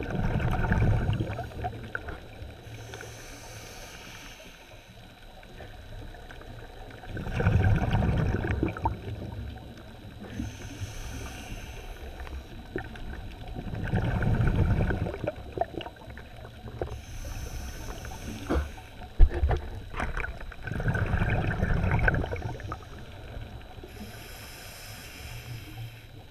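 A scuba diver breathing through a regulator, heard underwater. A thin hiss on each inhale alternates with a louder, low rush of exhaled bubbles, one breath about every seven seconds.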